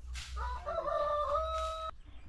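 A rooster crowing once: a call about a second and a half long that rises and then holds one steady note before cutting off suddenly.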